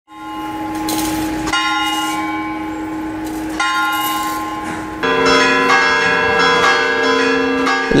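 Church bells ringing: separate strikes a second or two apart, each ringing on. About five seconds in, a fuller, denser set of bell tones comes in and rings on.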